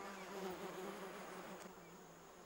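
A bee buzzing: a faint, steady low hum that slowly fades.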